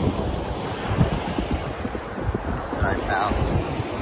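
Surf washing on the beach, with wind buffeting the microphone in uneven low gusts.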